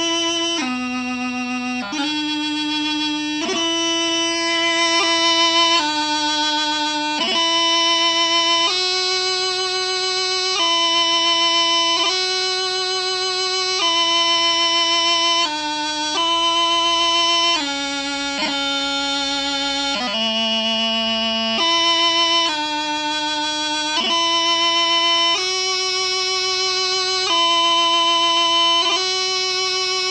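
Piobaireachd ground played slowly on a Highland bagpipe practice chanter, without drones. It is a single reedy melody of long held notes, each broken off by quick grace-note cuts.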